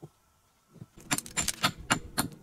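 Hammer striking stone in quick taps, about five sharp strikes a second with a faint metallic ring, starting about halfway in after a single knock at the start.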